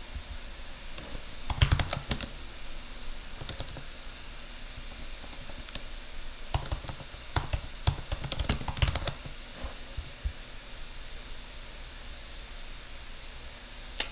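Typing on a computer keyboard in two bursts of keystrokes: a short one about one and a half seconds in, and a longer run from about six and a half to nine seconds.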